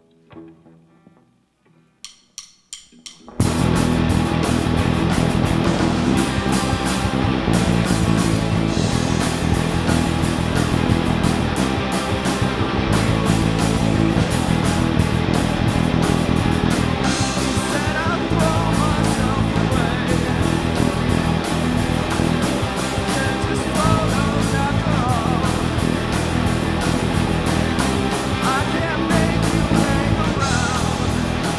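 A few quick sharp clicks, then a rock band with two electric guitars, electric bass and a drum kit comes in loud about three seconds in and plays on steadily.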